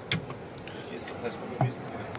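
Low murmur of people's voices with a few light clicks and knocks of handling.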